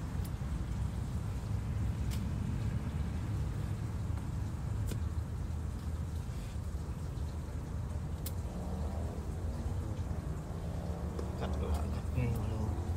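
A steady low rumble with a few sharp clicks spaced a couple of seconds apart, as leafy greens are cut from a raised garden bed; faint voices come in near the end.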